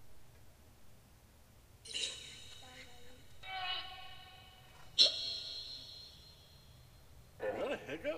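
Ghost-box app played through a small Bluetooth speaker: short choppy electronic voice-like fragments about two seconds in and again at three and a half seconds, then a sudden sharp tone at five seconds that rings on and fades, with more garbled voice-like snippets near the end.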